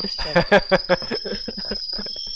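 Tea kettle whistling at the boil, a steady piercing high whistle, loud enough to be called deafening, with laughter over it.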